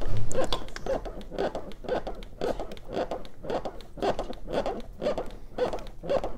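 Chest compressions on a CPR training manikin: a steady rhythm of about two pushes a second, each a short rustling compression sound from the manikin's chest.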